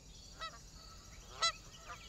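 Faint, short honking bird calls, three of them about half a second to a second apart, over a low steady background hum.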